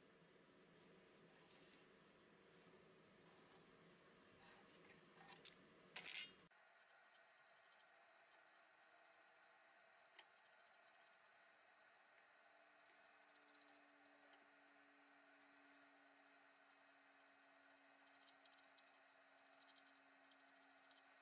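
Near silence: faint room tone, with a few soft clicks about five to six seconds in and a faint steady hum in the second half.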